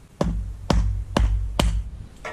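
Hatchet splitting kindling on a stone block: four sharp wooden knocks about half a second apart, each with a dull low thud.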